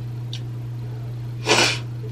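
A woman gives one short, sharp, breathy burst about one and a half seconds in, a scoff of disbelief. It sits over a steady low hum.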